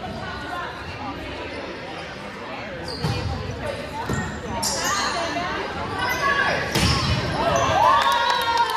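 Volleyball rally in a large gym: the ball is struck about four times, the hardest hits in the second half, echoing off the hall walls, with players' voices calling out throughout.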